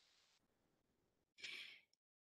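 Near silence, then a person's short intake of breath about one and a half seconds in.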